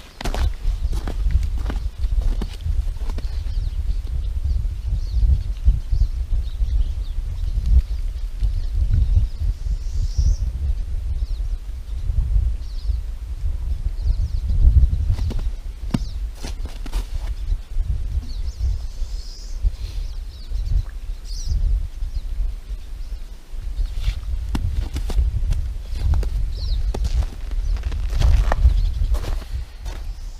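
Footsteps on hard-packed, slippery snow, over a loud, uneven low rumble of wind on the microphone. A few faint, high bird chirps come through now and then.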